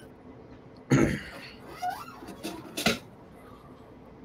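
A person coughing: one loud cough about a second in and a shorter one just before three seconds.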